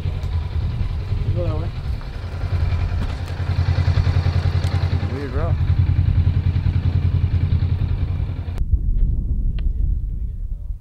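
An engine running steadily with a fast, even low pulse. Its sound turns duller about eight and a half seconds in.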